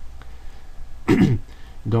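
A man clears his throat once, a short loud burst about a second in whose pitch drops.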